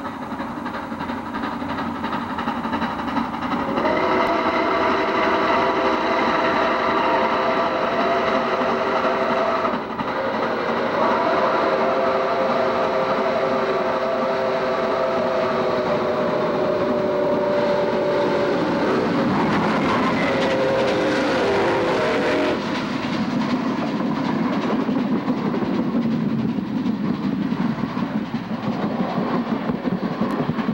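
Chime whistle of a doubleheader of two Lima-built 2-8-4 Berkshire steam locomotives blowing three long blasts as the train approaches at speed, over the steady rumble of the working train. In the last few seconds the whistle is over and the passenger cars roll past with wheel clickety-clack.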